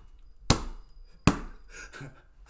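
A hand slapping a desk twice, sharp thumps a little under a second apart.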